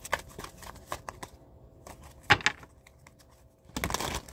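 A deck of cards being shuffled by hand: a run of short snaps and ticks of cards against each other, with a louder flurry a little past halfway and another near the end.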